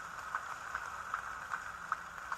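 Background noise of a large seated congregation in a hall: a steady hiss with faint, regular clicks about two or three times a second.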